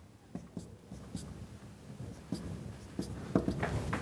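Marker pen writing on a whiteboard in short, separate strokes.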